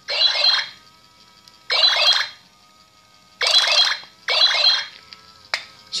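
Toy robot's built-in speaker playing four short bursts of electronic sound effects, each about half a second long, with a single click near the end. The robot's sound is said to be getting distorted.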